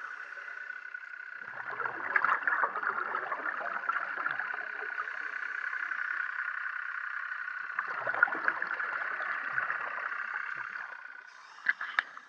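Underwater scuba breathing: the diver's regulator exhaling two long rushes of bubbles, each about three seconds, over a steady hiss.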